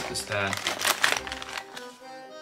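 Crinkling and clicking of cosmetics and packaging being rummaged through in a makeup bag, with a few brief bits of voice early on and background music underneath.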